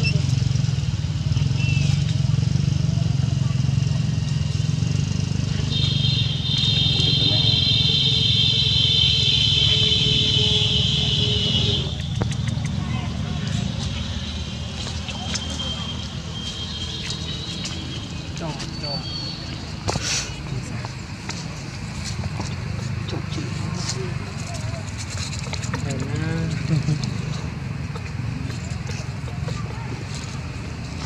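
Outdoor ambience: a steady low rumble with faint, indistinct voices, and a high, even buzzing drone lasting about six seconds from around six seconds in.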